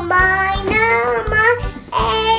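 A young child singing over upbeat children's music with a steady beat.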